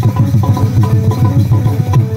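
Live folk-band music: a harmonium playing held, reedy melody notes over a fast, steady hand-drum rhythm whose low strokes drop in pitch.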